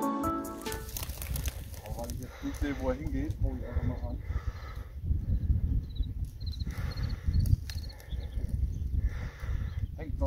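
Music fading out in the first second, then steady wind rumble on the microphone. A few wavering animal calls come about two to four seconds in, and faint high chirps around the middle.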